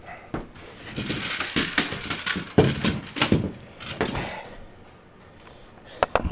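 Handling noise from a camera being fitted to a tripod: a run of clicks and knocks with rustling and scraping, the loudest knocks about midway, growing quieter near the end.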